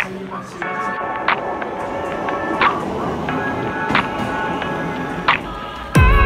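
Music with held chords and a sharp beat about every 1.3 seconds, over a murmur of background chatter.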